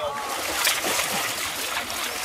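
Several people wading through a deep, muddy stream, the water splashing and sloshing around their legs as they push through, with a few short splashes standing out.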